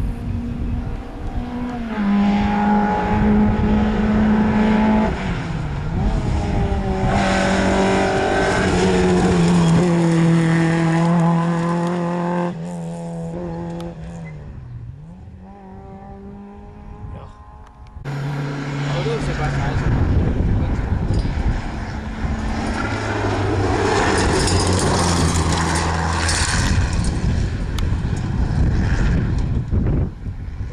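Rally car engines at full throttle on a tarmac stage, revving high and stepping up and down through the gears. The engine fades away about halfway through, then another engine rises and runs hard through the gears again.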